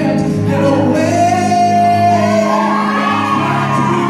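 Live pop band of drums, electric guitar and keyboard playing under a male singer, who holds one long sung note about a second in.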